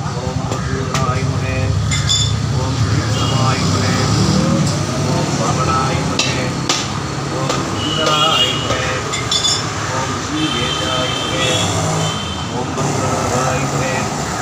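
A Hindu priest chanting Sanskrit archana mantras continuously, over a steady low rumble of background traffic, with a few short clicks or knocks.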